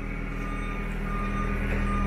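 A high electronic beep repeating about every two-thirds of a second, over a steady low hum.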